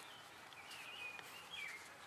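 Faint, thin bird chirps over quiet outdoor background noise.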